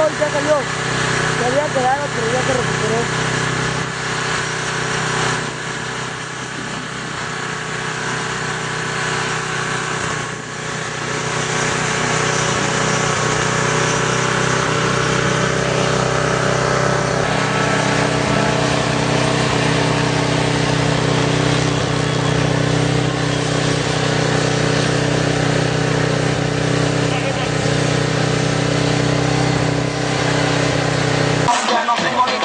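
Off-road race vehicle engines running steadily as they work through a mud track, with people's voices in the background.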